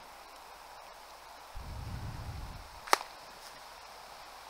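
A single sharp crack of an air rifle shot about three seconds in, after a second or so of low rumble.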